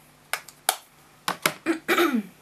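Half a dozen short, sharp clicks and taps in quick succession, followed near the end by a brief falling hum of the voice.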